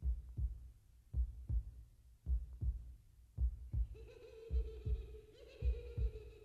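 Heartbeat sound effect: slow double thumps, lub-dub, repeating a little more than once a second. About four seconds in, a steady held tone with overtones comes in over it.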